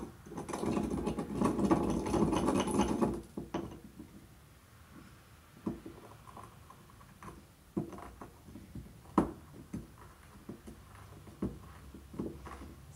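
Frankincense resin being ground with a pestle in a mortar: a dense grinding stretch for about three seconds, then quieter, scattered knocks and taps of the pestle on the resin lumps and bowl.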